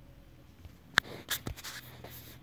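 Handling noise: a sharp click about a second in, followed by a few softer clicks and scrapes.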